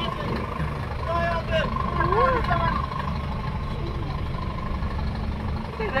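Heavy truck engines idling in a stalled line of traffic, a steady low rumble with a faint steady whine on top, under voices of people talking in the background.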